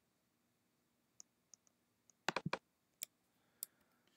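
A few sharp clicks from a computer keyboard and mouse in use. Two faint ticks come first, then a quick run of four louder clicks about two and a quarter seconds in, followed by two single clicks.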